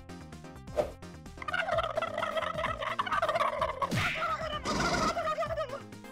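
A long, wavering, warbling call that starts about a second and a half in and lasts about four seconds, with a sharp knock near the start and another in the middle of the call.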